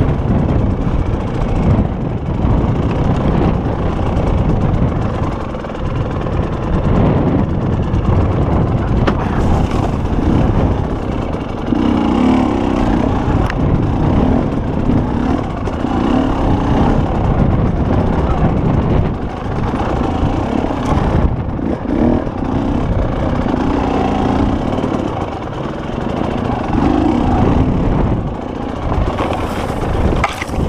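Enduro motorcycle engine running as the bike is ridden down a rough dirt trail, heard close up from the bike itself, loud and continuous with its note and level changing as the rider works the throttle.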